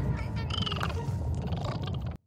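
Animated-series soundtrack: a steady low rumble with a short creature-like croaking call about half a second in.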